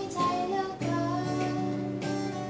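A young woman singing to a strummed acoustic guitar. A new chord is strummed just under a second in.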